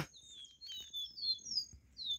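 Caboclinho (Sporophila seedeater) singing: a quick run of short, high, thin whistled notes, each sliding in pitch, about seven or eight in two seconds.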